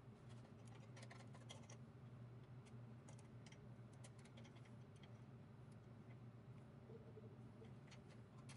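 Faint, scattered small clicks and ticks of a plastic adjustment tool and a screwdriver being handled against a bandsaw's blade guide, over a steady faint low hum.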